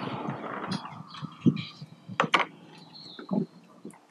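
Light handling noises: a rustle that fades over the first second, then a few short clicks and knocks about two seconds in and again near the end.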